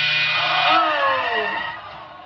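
Game-show buzzer giving a harsh, steady wrong-answer buzz that cuts off under a second in: the price chosen is wrong. Then the studio audience groans, their voices falling in pitch.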